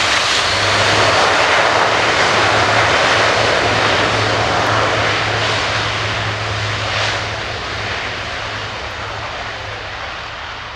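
Airbus A400M Atlas's four TP400 turboprop engines running with propellers turning, a loud steady low propeller drone under dense engine noise. It is loudest as the aircraft passes close and fades over the last few seconds as it moves away on the ground.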